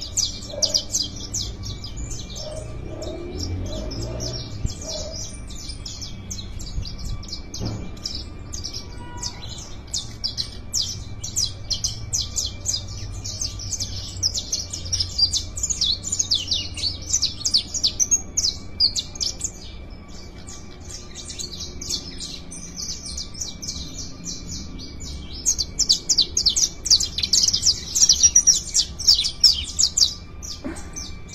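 Several caged saffron finches (canarios criollos) singing at once in fast, twittering trills, birds set to warm up by singing against each other. The singing swells louder about halfway through and again near the end.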